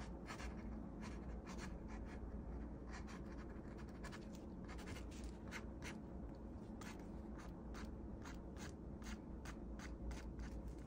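Fine ink pen scratching across paper in many short, quick strokes, irregular in rhythm, as lines are hatched in, over a steady low hum.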